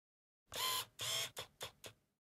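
Intro sound effect for an animated logo: two short noisy bursts followed by three shorter, fainter repeats that die away like an echo.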